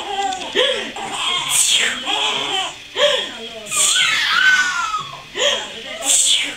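Infant fussing and crying out in short wordless bouts, each rising and falling in pitch, with a higher gliding cry about four and a half seconds in.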